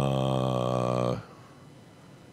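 A man's voice holding a drawn-out, level-pitched 'uhhh' of hesitation for about a second and a half. It stops a little past a second in.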